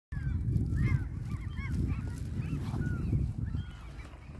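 Geese honking repeatedly in quick, overlapping calls, with wind rumbling on the microphone underneath.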